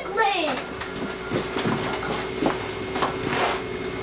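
Footsteps on a hard floor: a few irregular knocks over a steady electrical hum.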